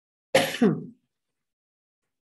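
A woman clearing her throat once, with two quick rough pushes, the second sliding down in pitch.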